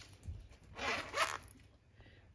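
A zip on a cash purse being pulled open: one rasping zip of well under a second, starting a little under a second in.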